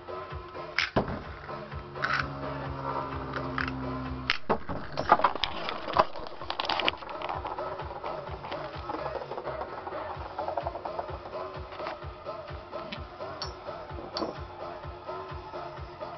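Metal Fight Beyblade tops spinning in a plastic stadium, with a cluster of sharp clacks as they collide a few seconds in, then lighter scattered clicks. Electronic dance music plays behind.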